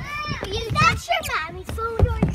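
Young children's high-pitched excited vocalising and squeals, the voices sweeping up and down in pitch.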